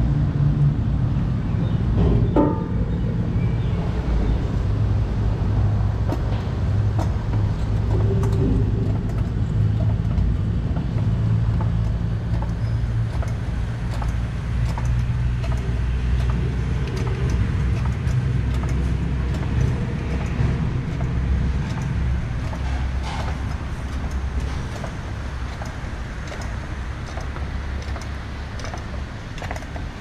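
A steady low mechanical hum, like an engine or motor running, fills the workshop, with faint metallic clicks of tools scattered through it.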